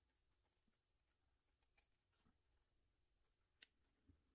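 Faint snipping and clicking of scissors cutting backing material close around beadwork, with two sharper snips, one a little under two seconds in and one near the end.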